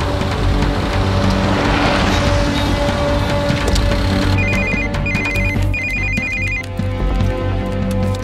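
Film score of sustained tones, joined about halfway through by a phone ringing in three short trilling bursts.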